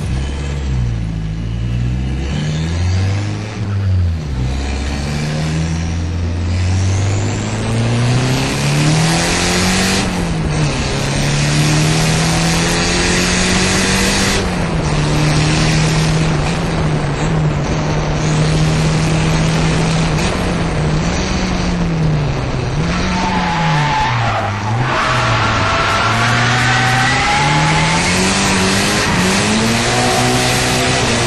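Drift car heard from on board, its engine revving up and down again and again as the car slides, over a constant hiss of tyre squeal.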